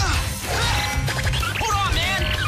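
Fight-scene sound effects: several punch and kick impacts over a music track.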